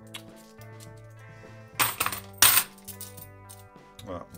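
Cupronickel 50p coins clinking against each other as they are sorted in the hand, a quick cluster of sharp, loud clinks about halfway through, over steady background music.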